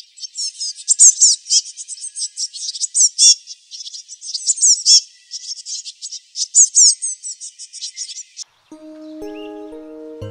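Birds chirping and twittering in quick, high, sweeping calls for about eight seconds. The calls stop near the end as gentle music with long held notes comes in.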